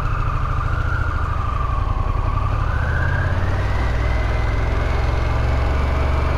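Harley-Davidson Pan America's 1250 cc V-twin running steadily as the motorcycle rides off, with a deep rumble and a faint whine that rises in pitch over the first few seconds.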